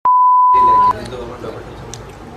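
A loud, steady 1 kHz test-tone beep, the signal that goes with TV colour bars, lasting just under a second and cutting off abruptly, followed by low chatter of people in the room.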